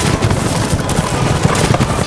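Dense battle sound effects of a cavalry charge: many hooves and impacts run together into a loud, continuous rumble.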